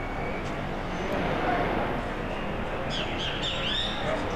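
Birds chirping, a quick cluster of calls near the end, over a steady outdoor background hiss.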